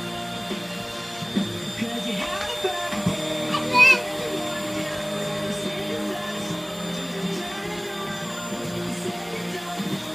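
Corded stick vacuum cleaner running with a steady motor hum as it is pushed across a rug. A child's brief voice sounds break in between about one and a half and four seconds in, the loudest just before four seconds.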